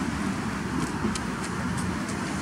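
Steady background noise of distant road traffic, a low even hum with a few faint ticks.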